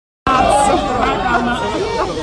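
A crowd of people talking over one another in a jostling press scrum, starting abruptly a moment in.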